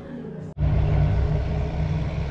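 Background music that cuts off abruptly about half a second in, followed by a loud, steady low rumble of road traffic.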